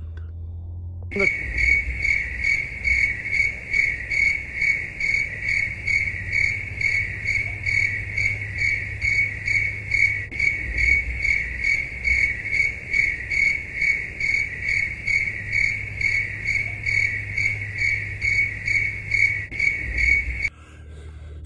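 A cricket chirping in an even rhythm, about two to three chirps a second, with a low steady rumble underneath.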